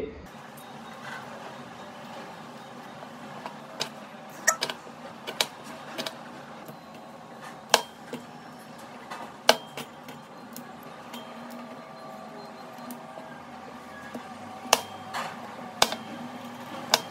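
Kitchen knife knocking against a plastic cutting board in scattered sharp taps while slicing tomato and cutting broccoli into florets, over a faint steady background hum.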